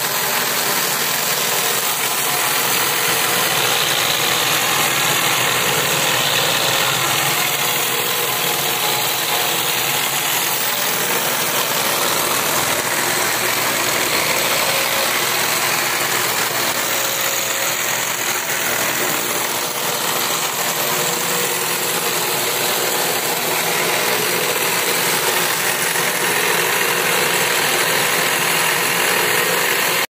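Homemade cord-making machine running steadily: a motor under a sewing-machine table drives a belt, pulleys and a shaft that spins the cord spindle, giving a continuous mechanical whirr and rattle.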